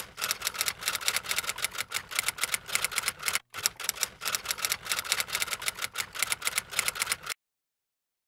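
Rapid key clicks like typing, about eight to ten a second, with a brief pause about three and a half seconds in. They cut off suddenly near the end.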